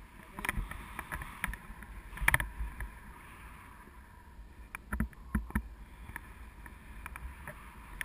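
Wind rushing over an action camera's microphone in paraglider flight: a steady rush with low buffeting rumble, broken by scattered clicks and knocks, the loudest about two seconds in and a cluster around five seconds.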